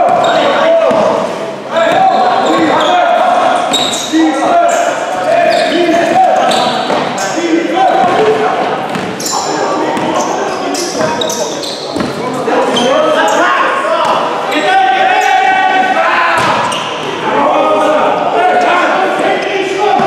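Basketball game in a large sports hall: the ball bouncing on the wooden court in repeated thuds, with players' voices calling out, all echoing off the hall walls.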